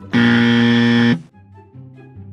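Loud, flat buzzer sound effect lasting about a second and cutting off abruptly, signalling a lie detected, over soft background music.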